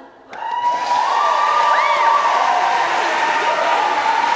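Audience applause and cheering break out about half a second in, just after the a cappella song ends, with a high rising-and-falling whoop near the middle.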